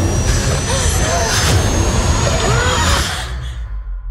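Film trailer sound design: a loud, dense rumble with a thin, slowly rising high tone and short wailing pitch glides over it. About three seconds in it cuts away to a low rumble alone.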